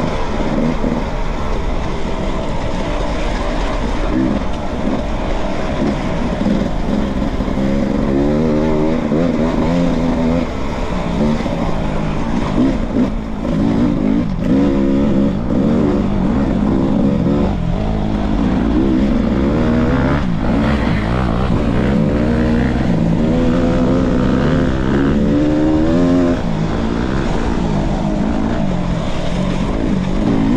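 Off-road dirt bike engine heard from the bike itself, revving up and down over and over as the rider accelerates, shifts and backs off along a rough trail, with a few knocks from the bike over bumps around the middle.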